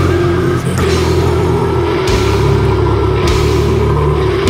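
Slamming brutal death metal: heavily downtuned distorted guitars and bass holding low chords over drums, with cymbal crashes about halfway through and again a little later, and no vocals.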